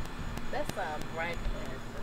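People talking in short snatches of speech, with a couple of sharp clicks.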